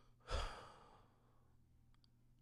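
A sigh: one breath pushed out audibly about a third of a second in, fading away over about half a second.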